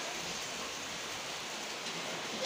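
Steady hiss of curry bubbling and sizzling in an iron kadai over a wood fire as water is poured into it.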